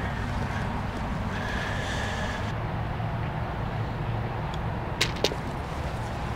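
Two sharp clicks about five seconds in, a quarter second apart, the second with a short ring: a short putt tapped with a putter and the golf ball dropping into the cup. Under them runs a steady low outdoor rumble.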